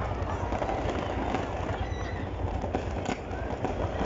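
Fireworks going off continuously, a dense stream of crackles and pops with a sharper crack about three seconds in.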